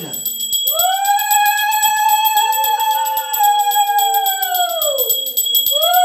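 Conch shells blown in long held notes, a second lower one joining about two seconds in. Their pitch sags as the breath runs out about five seconds in, then a fresh blow starts. Under them a handbell is rung rapidly and continuously.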